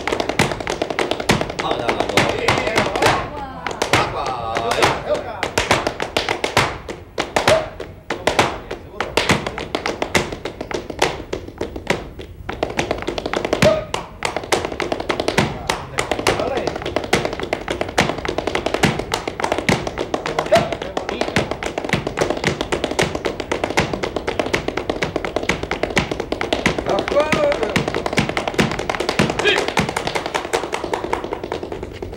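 Flamenco palmas: several dancers clapping their hands in a fast, dense rhythm, with heel stamps of footwork on the floor.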